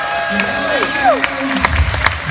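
A small crowd applauding and cheering, with several people holding long "woo" whoops that trail off, falling in pitch, about a second in.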